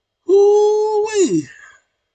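A man's wordless, drawn-out vocal sound: one note held for about a second, then sliding steeply down in pitch.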